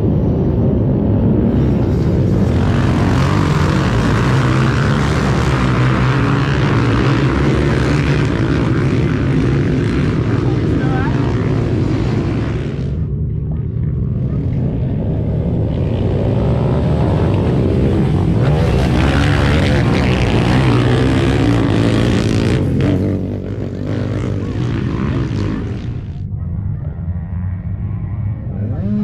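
Many youth ATV engines running and revving together on a race start line before the green flag, a dense, loud, continuous sound. It eases off briefly about halfway through and drops again for the last few seconds.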